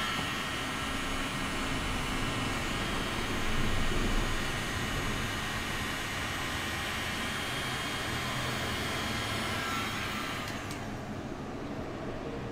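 Handheld electric heat gun blowing hot air steadily over wet epoxy resin, a constant rushing hiss with a faint motor whine. It is switched off about ten and a half seconds in, and the hiss dies away.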